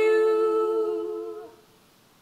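Two female voices, unaccompanied, holding the song's final note in two-part harmony. It fades out about one and a half seconds in.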